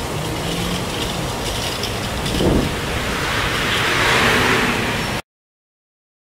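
Steady outdoor traffic noise, with a brief swell about halfway and a louder stretch near the end, cutting off abruptly to silence about five seconds in.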